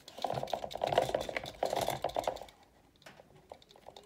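Close handling noise: a rapid patter of small clicks and rubbing for about two and a half seconds, then a few fainter scattered clicks.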